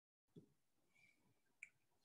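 Near silence: faint room tone with two small clicks, a soft one about a third of a second in and a sharper one near the end.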